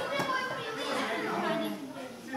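Indistinct chatter of several voices, children's among them, in a large hall.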